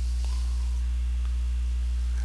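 Steady electrical mains hum, a low drone with a stack of higher overtones, running unchanged at a fairly loud level.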